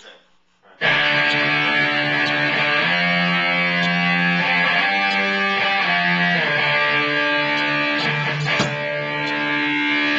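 Electric guitar playing sustained chords through an amp, starting abruptly about a second in; the chords change every second or two.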